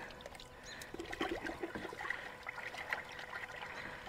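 Faint trickling and splashing of liquid in a plastic bucket as window-cleaning solution is mixed, with a few small clicks.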